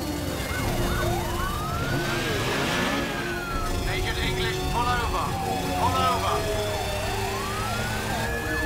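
Police car siren wailing, rising and falling slowly twice, with short chirping siren sounds in between, over a steady low rumble of vehicle engines.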